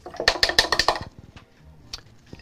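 A quick run of light, sharp clicks, a dozen or so in under a second, then a single click near the end.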